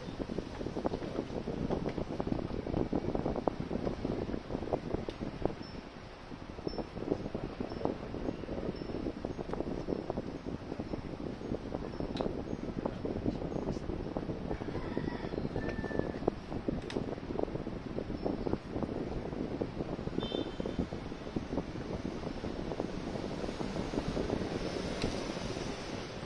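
Continuous crackling and rustling of range-extender battery wires being worked by hand through a hole in an electric scooter's deck, with a few faint high tones near the middle.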